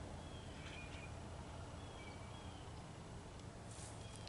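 Quiet rural outdoor ambience with a few faint, short bird chirps scattered through it, and a brief noise near the end.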